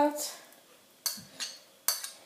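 Metal spoon clinking and scraping against a ceramic plate while ingredients are scraped off into a saucepan: three short, sharp clinks, the first about a second in and the last near the end.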